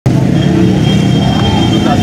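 Road traffic running steadily on a busy highway, with people's voices over it and a thin, steady high whine held through most of it.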